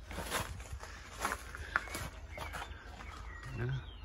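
Footsteps and camera-handling rustle as a man walks with a hand-held camera: a few scattered short clicks over a steady low rumble. A man says "yeah" near the end.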